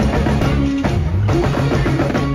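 A live pagode baiano band playing, with driving drums and percussion over a bass line and held notes.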